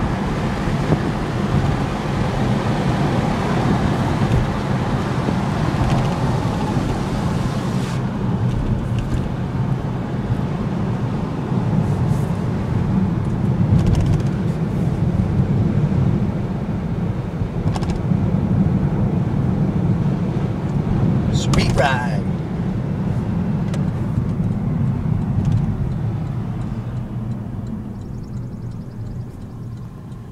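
Porsche Panamera S's 4.8-litre V8 and road noise heard from inside the cabin while driving: a steady low drone that eases off over the last few seconds as the car slows. A brief high sweeping sound cuts through a little past the middle.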